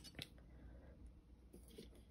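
Near silence: room tone, with a faint tap just after the start and a few soft ticks towards the end as fingers handle a clear plastic bauble.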